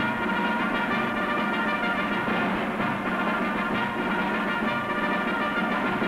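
Orchestral title music with held brass chords, played from a 16mm film soundtrack.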